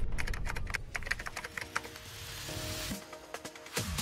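Computer-keyboard typing sound effect, fast keystroke clicks at about ten a second for nearly two seconds, over a music bed. Near the end the clicks give way to a short held musical tone.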